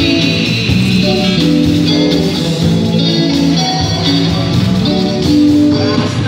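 Live rock band playing a guitar-led instrumental passage between sung lines: strummed and picked electric guitars over bass and drums.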